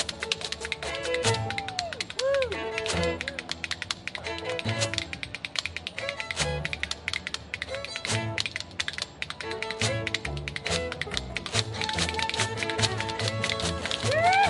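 Old-time string band playing: a fiddle carrying the melody with sliding notes over upright bass, and a washboard keeping a fast clattering rhythm.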